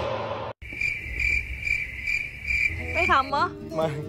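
A night insect chirping: a steady high-pitched trill pulsing about three times a second, starting about half a second in after a brief gap.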